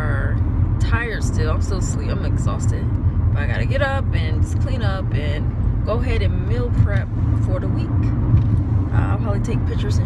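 Talking inside a moving car's cabin, over the steady low rumble of road and engine noise.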